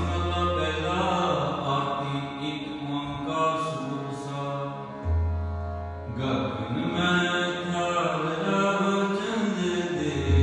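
Sikh shabad kirtan: a voice singing a Gurbani hymn in long melodic phrases over steady harmonium tones and a low drone that drops out and returns twice.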